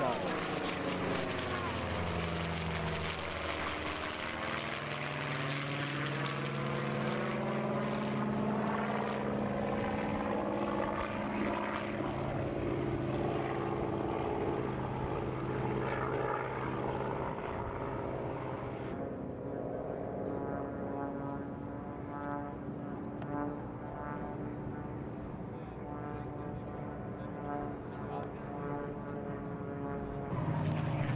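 P-51 Mustang fighters passing overhead, their V-12 piston engines and propellers droning. The pitch falls as a plane goes by in the first few seconds, then settles into a steady drone that turns duller about two-thirds of the way through.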